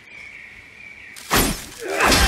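Faint background noise with a thin, steady high tone, then about a second and a half in a sudden loud crash that rings on to the end.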